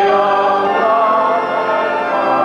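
Music: a choir singing slow, sustained chords in several voice parts, the notes held for a second or more before changing.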